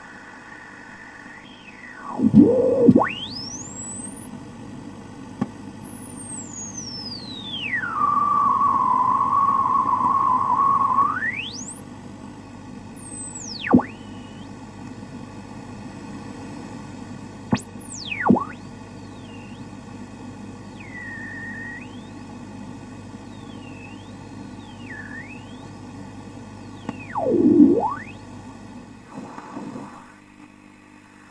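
Radio static and hum crossed by whistling interference tones that glide up and down in pitch, one settling into a steady whistle for about three seconds, with several quick swoops before and after.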